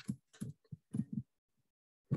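A man's voice muttering a few short, quiet fragments, which trail off about a second in.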